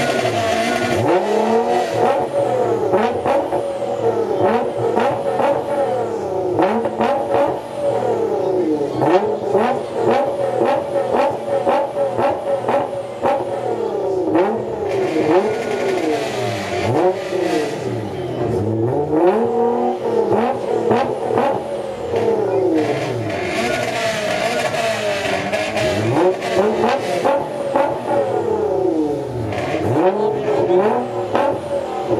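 Nissan GT-R's twin-turbo V6 revved in place again and again, its pitch rising and falling with each blip, with frequent sharp crackles between revs.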